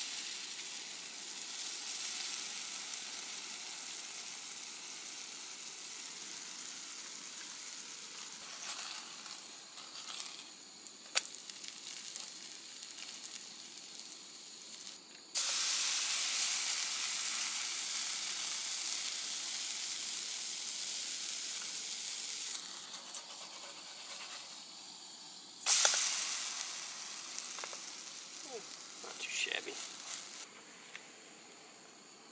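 Pancake batter frying in hot oil in a small frying pan: a steady sizzle that jumps much louder about halfway through as more batter is poured into the oil, then eases off, and flares up sharply again a few seconds before the end.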